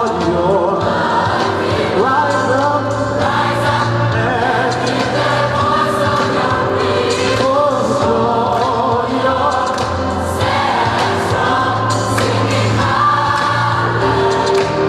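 Large mixed gospel choir of men, women and children singing together in full voice in a cathedral.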